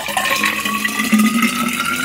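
Water being poured from a plastic pitcher into a stainless-steel water bottle: a steady splashing stream whose pitch rises as the bottle fills.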